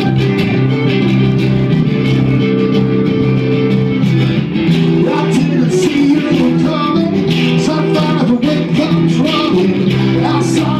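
Live acoustic guitar music, with chords held steadily at first; a man's singing voice comes in about halfway through.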